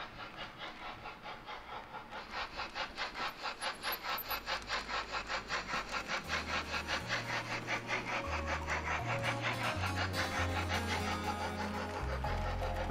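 Steam-locomotive chuffing from a model S 3/6 express engine, an even beat of about four to five exhaust beats a second, slowly growing louder. Low held music notes come in under it partway through.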